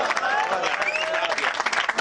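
A crowd applauding, many hands clapping fast and steadily, with voices calling out over the clapping.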